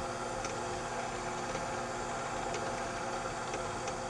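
Drill press running with no load, a steady motor and spindle hum, while the center drill turns above the workpiece.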